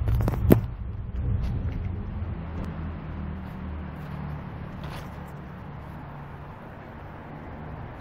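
1989 Honda CRX SI engine idling with a low, steady hum that slowly fades, with one sharp click about half a second in.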